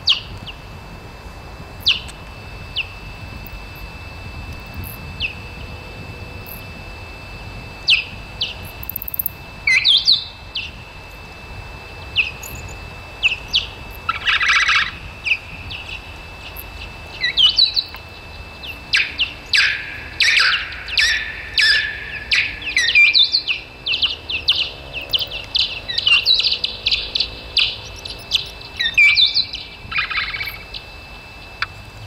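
Bat detector turning noctule bats' echolocation calls into audible chirps and clicks. They come scattered at first, then crowd into a rapid run from a little past halfway.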